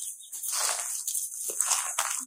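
Footsteps crunching through dry fallen leaves, about one step a second.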